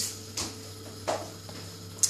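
Quiet pause with a steady low electrical hum and two brief soft noises, about half a second and a second in.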